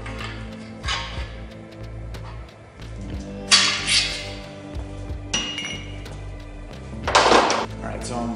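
Steel main bearing caps and hand tools clinking against a bare LS engine block as the caps are worked off and handled: a few sharp metal clinks, the loudest at about three and a half and seven seconds in, one with a short ringing tail, over steady background music.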